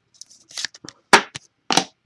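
Baseball cards being handled on a tabletop: a few soft slides of card stock and three or four sharp clacks as cards are set down and moved.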